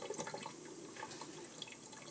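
Thin stream of tap water trickling faintly into a stainless steel sink, with a few small drip-like ticks.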